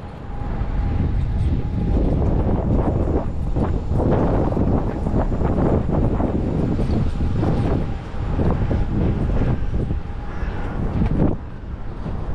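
Loud, uneven rumble of trains in the railway yard below, mixed with wind gusting on the microphone, with a faint steady hum that fades in and out.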